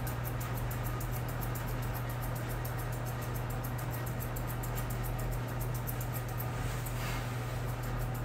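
Grooming shears snipping rapidly and evenly, several cuts a second, as the coat on the back of the head is blended into the neck. A steady low hum runs underneath.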